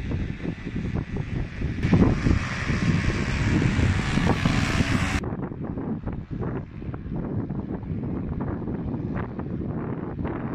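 Wind buffeting the microphone in gusts throughout. A louder, steadier rushing hiss sits over it from about two seconds in and cuts off suddenly a little after five seconds.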